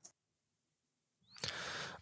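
Near silence in a pause between speakers: a faint click at the very start, then a soft, steady hiss of microphone and line noise coming up about one and a half seconds in.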